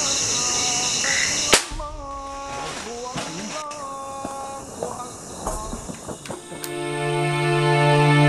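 A single sharp shot about a second and a half in, cutting off a steady chorus of night insects. Background music follows, swelling into a steady chord near the end.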